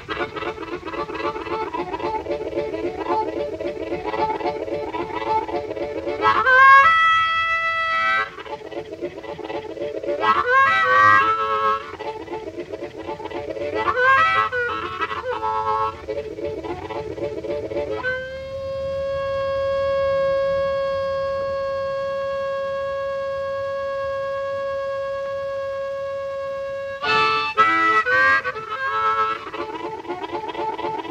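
Old-time blues harmonica played solo: a rhythmic chugging chord pattern broken by short rising wails, then one long held note for about nine seconds before the chugging resumes.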